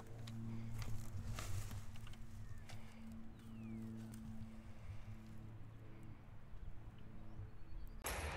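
Dry grass rustling and the scattered clicks of a litter grabber as it picks up a tennis ball, over a steady low hum from an unseen engine or motor.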